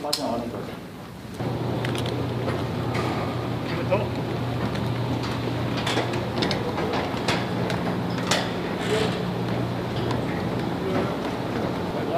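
Boots tramping on steel grating and gear clinking, as scattered clicks and knocks over a steady low mechanical hum.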